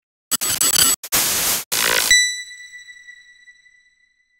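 Logo sound effect: a few bursts of static-like noise in the first two seconds, then one bright ringing tone that slowly fades out.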